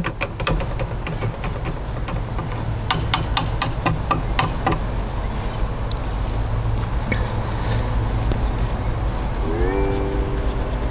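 Outdoor ambience: a steady high drone of insects over a low rumble, with a quick run of sharp clicks in the first half.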